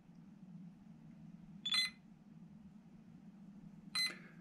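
Radiomaster TX16S transmitter beeping in bind mode: a short high beep about two seconds in and another at the end.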